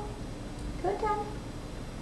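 Sheltie puppy giving one short, high whine about a second in.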